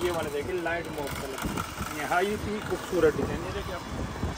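People talking: speech that the recogniser did not write down.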